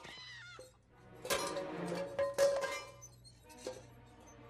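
A chicken squawks briefly with falling calls. Then, from about a second in, comes a run of sharp clattering clinks and knocks of metal and glass that ring briefly, like kitchenware being knocked about in a fight, over a soft music score.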